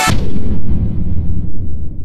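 Deep boom sound effect for an animated logo: a sudden hit as the electronic music cuts off, then a low rumble that slowly dies away.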